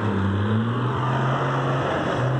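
Diesel engine of a loaded tipper dump truck pulling away, a steady low drone.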